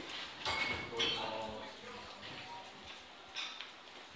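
People's voices talking, loudest in the first second and a half, with a short click about three and a half seconds in.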